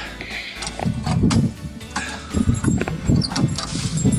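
Irregular clanks and knocks as a key and the iron fittings of an old wooden door are worked to unlock it.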